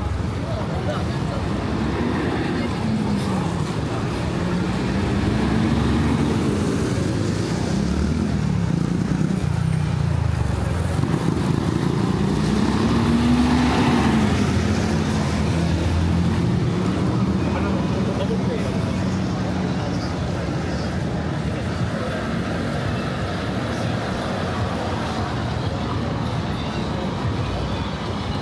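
Traffic on a wet city street: vehicles pass with engine pitch rising and falling, and it is loudest when a city bus passes close about halfway through.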